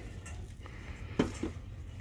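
A snow globe being handled on a glass shelf: a couple of faint clicks, then a sharp short knock a little past a second in and a lighter one just after, like the glass globe being set down against the shelf or another globe.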